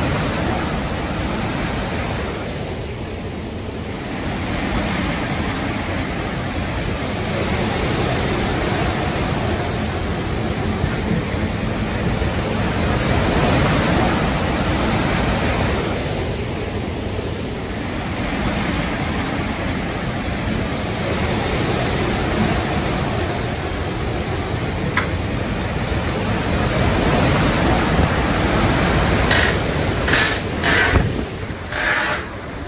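Derecho straight-line wind and driving rain, a loud steady rush that swells and eases in gusts every few seconds. A few sharp clicks near the end.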